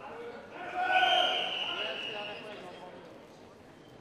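A loud, drawn-out shout in a large hall, starting about a second in and fading away over the next two seconds.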